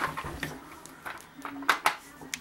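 Two sharp clicks near the end as small hard cast-resin charms knock against each other or the table while being handled, with a few brief spoken sounds around them.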